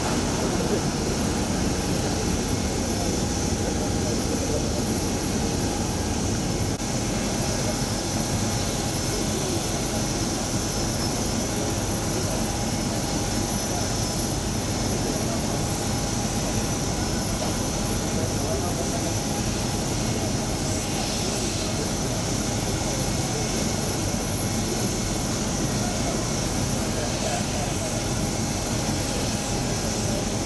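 Jet aircraft engine noise on an airport apron: a steady, continuous rush with a faint high whine held throughout.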